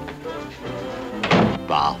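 A single loud wooden thunk of a door about a second and a half in, over a soft orchestral string underscore.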